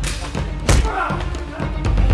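A single hard thud of a blow landing about two-thirds of a second in, followed by a short cry, over background music with low bass notes.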